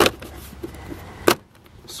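Plastic body panel around an ATV's gauge cluster being pulled loose by hand, its snap clips letting go with two sharp clicks, one at the start and one about a second later.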